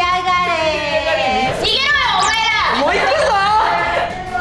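Excited, high-pitched voices of several people, rising and falling sharply in pitch.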